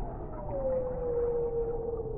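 Humpback whale song: one long call that starts about half a second in and slides slowly down in pitch, over steady low background noise.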